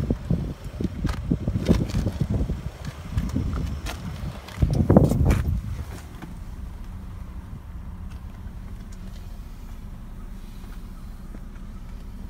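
Knocks and rustles of handling for the first few seconds, with a louder burst about five seconds in, then the steady low hum of the 2003 Lexus GS300's 3.0-litre inline-six idling, heard from inside the cabin.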